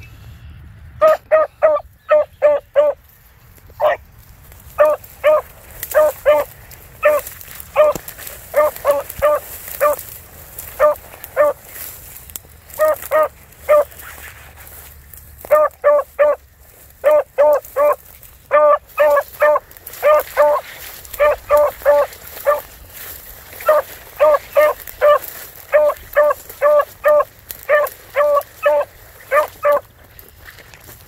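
Beagle baying in runs of short, yelping barks, about four a second, with brief pauses between runs, typical of a hound giving tongue while trailing a scent.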